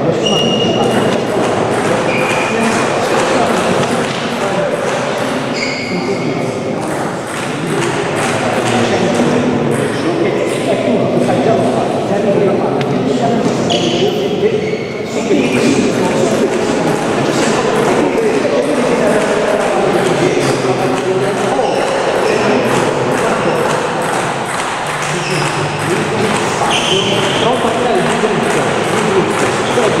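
Voices talking throughout, with scattered short high pings and light clicks of a table tennis ball bouncing and being struck.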